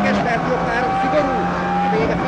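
Ford Focus WRC's turbocharged four-cylinder rally engine running at high, steady revs, heard from inside the cabin, with a small change in pitch just after the start. The co-driver's voice calls pace notes over the engine.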